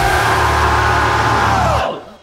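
The closing sustained chord of a metalcore song, with a full band holding loud distorted sound over a deep bass. It cuts off sharply near the end, leaving a short ringing fade.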